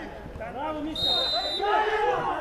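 Footballers' voices shouting and arguing on the pitch, several at once, during a heated squabble between the two teams. About a second in comes a short, steady referee's whistle blast.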